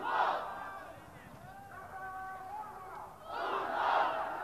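Stadium crowd shouting, rising in two loud surges, one just after the start and one near the end, as a goalmouth chance develops, with single voices calling out in between.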